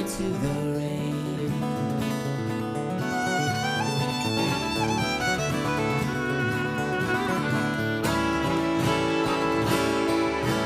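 Fiddle playing a melody over acoustic guitar accompaniment: an instrumental break between sung verses of a folk song.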